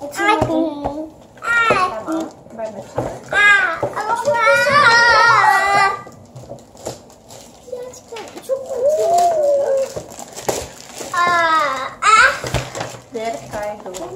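Young children's voices babbling and calling out, with no clear words, including a drawn-out high-pitched call about four seconds in.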